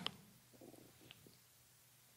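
Near silence: room tone, with a faint soft sound about half a second in and a faint tick about a second in.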